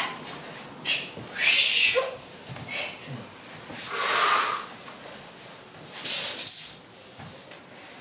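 A man breathing hard after a set of core exercises: three drawn-out, breathy exhales spaced about two and a half seconds apart.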